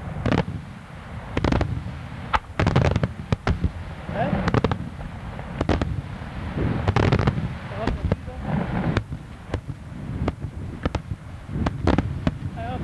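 Daytime fireworks: aerial bombs bursting overhead in a rapid, irregular volley of sharp bangs, some in quick clusters, with a deep rumble rolling on between them.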